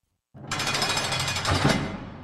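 A sudden, dense, rapid rattling burst of noise that starts about a third of a second in, swells louder near the end, then begins to fade: a produced sound effect opening the podcast intro.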